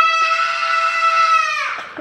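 A three-year-old boy's long, high-pitched scream, held at one steady pitch and sagging away near the end: a protest scream at his parents hugging.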